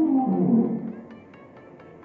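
A long, whale-like moaning call that slides down in pitch, wavers and fades out about a second in. Soft ambient music with light, evenly spaced chiming notes carries on underneath.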